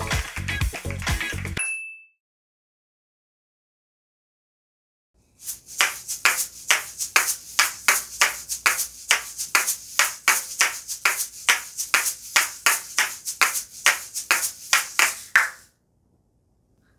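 Asalato (patica) shakers played in a steady grouped rhythm of flip-flops and den-dens: crisp rattling strokes about three a second for about ten seconds, starting after a few seconds of silence. Before that, a second or so of music ending in a short high electronic ping.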